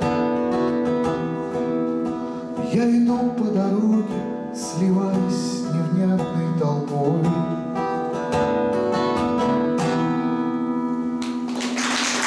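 A man singing to a strummed acoustic guitar, the closing bars of a song. Applause breaks out near the end.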